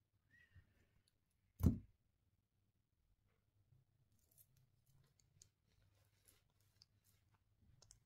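One sharp click a little under two seconds in, then a few faint ticks, from handling small pearls and a metal head pin while making jewellery; otherwise near silence.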